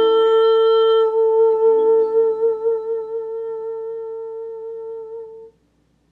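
A woman's voice holds one long final note of a song over a ukulele chord strummed right at the start and left ringing. Vibrato grows on the note as it fades, and the sound cuts off suddenly about five and a half seconds in.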